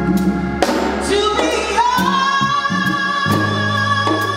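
Live soul band performing with a female lead singer and a group of female backing vocalists, backed by keyboards, drums and strings. About two seconds in, a high note slides up and is held.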